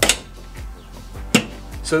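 Two sharp clicks about a second and a half apart from a steel vehicle drawer's locking T-handle latch being pressed shut, under background music.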